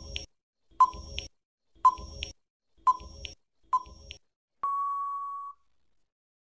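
Quiz countdown-timer sound effect: five short, sharp tick-beeps about a second apart, then one steady beep about a second long marking that the answer time is up.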